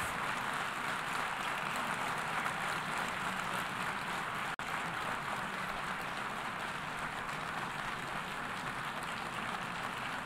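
Steady noise of a large assembly hall while a vote is taken, an even hiss-like background with no clear single sound in it, cut off for an instant about halfway through.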